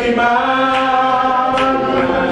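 Gospel singing in church: voices holding long, drawn-out notes.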